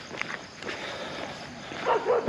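Soft footsteps of a person walking on a road at night, with a faint high chirring of crickets behind.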